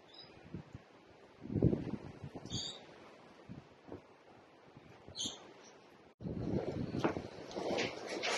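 A few brief, high bird chirps, three in all, over low rustles and bumps of movement, the loudest of them about a second and a half in. Near the end a louder stretch of rustling and handling begins.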